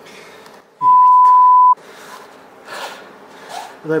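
A loud, steady electronic beep, one pure tone about a second long that starts and stops abruptly just as a voice begins: a censor bleep laid over a spoken word.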